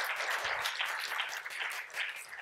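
An audience applauding, many hands clapping at once, the clapping thinning out in the second half.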